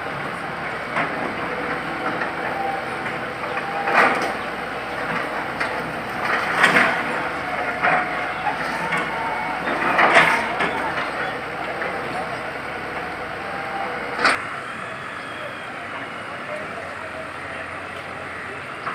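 A diesel backhoe loader running as it breaks down a brick-and-concrete building, with several sharp cracks of masonry giving way, plus the background murmur of a watching crowd.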